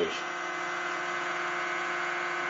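Transistor-switched pulse motor (Bedini-style energizer) running fast with its rotor spinning: a steady, even buzzing whine that holds one pitch.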